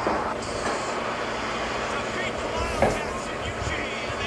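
Basketball arena crowd cheering and shouting as fans rush onto the court after an upset win, a dense steady roar of many voices. A sharp bang stands out about three seconds in.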